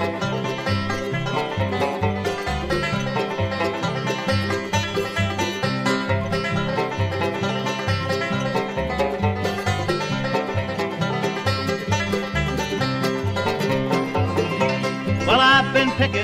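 Bluegrass band playing an instrumental break between vocal lines, with banjo, guitar, fiddle, mandolin and bass over a steady bass beat. A high note slides upward near the end, leading into the next verse.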